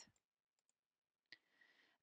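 Near silence, with a single faint click about two-thirds of the way in.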